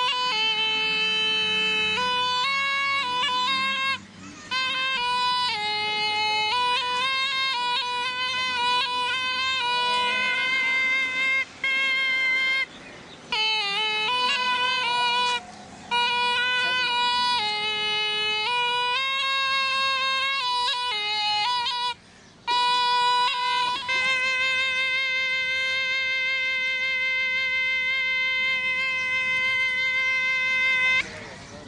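Snake charmer's pungi (been), a gourd wind instrument with reed pipes, playing a melody of held notes that step up and down, broken by a few short pauses. Over the last several seconds it holds one steady note.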